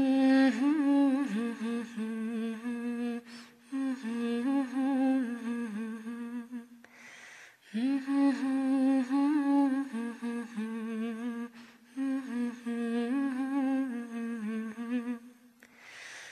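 A woman's voice humming a wordless, unaccompanied melody in four phrases of a few seconds each, with short pauses between them.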